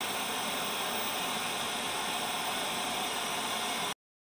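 Steady hiss of white noise like TV static, even and unchanging, that cuts off abruptly near the end.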